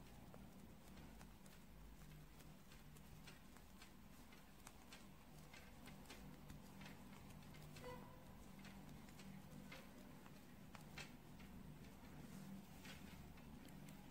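Faint, irregular clicks of metal knitting needles as stitches are purled along a row, over quiet room tone.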